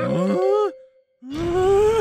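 A cartoon character's wordless frightened cry: a short rising groan that cuts off, a brief silence, then a longer rising, wavering cry.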